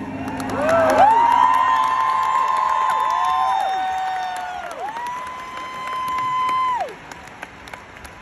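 Stadium crowd cheering and clapping as a song ends, with several fans close by screaming long high 'woo' calls that overlap and die away about seven seconds in. A low held note from the band fades out during the first couple of seconds.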